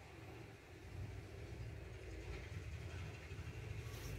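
Faint, steady low rumble of background noise that grows a little louder about a second in.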